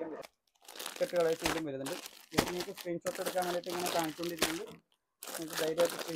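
A voice talking, untranscribed, over the crinkling of plastic saree packaging as the packed sarees are handled and stacked.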